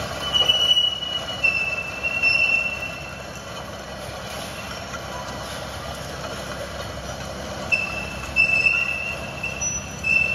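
Mini digger working while new rubber tracks are fitted: machinery noise with high squeals that come and go. The squeals are loudest in the first three seconds and again near the end.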